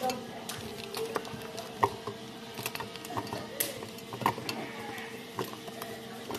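Plastic coffee capsules clicking and knocking as they are set one by one into a tall clear jar, a scatter of light, irregular clicks.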